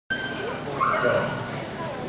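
A dog whining and yipping, loudest about a second in, over people talking.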